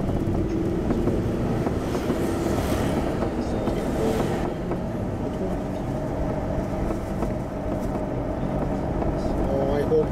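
Car cabin sound while driving: steady engine and tyre rumble from the road, with a brief rise in hiss about two to four seconds in.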